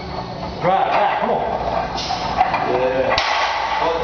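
Men's voices calling out wordless encouragement to a deadlifter between reps, with two short, sharp hissing breaths, one about halfway through and one near the end, as the lifter braces at the bar.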